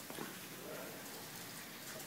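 Faint patter of a puppy's claws on a hard floor as it walks and sniffs, with one slightly louder tick near the start.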